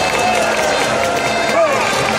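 Baseball cheer song played over a PA, a melody with cheerleaders' voices sung or chanted through handheld microphones over a steady backing.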